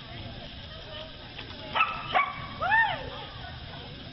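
A dog barking about four times in quick succession around halfway through, short sharp calls with a rise-and-fall pitch, over steady low background noise.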